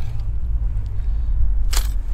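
Wind rumbling on the microphone, with one sharp click about three-quarters of the way through as the tip-up is handled.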